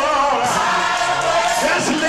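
Gospel choir singing.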